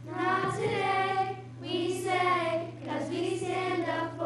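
A group of children singing a song together, in three short phrases with brief breaks between them.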